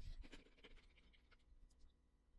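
Near silence: faint room tone with a few soft clicks and scratches in the first half second.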